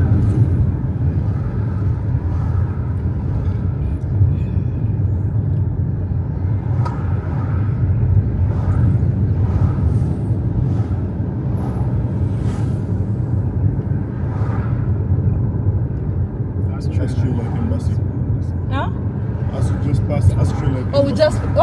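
Steady low rumble of road and engine noise heard from inside a moving car's cabin.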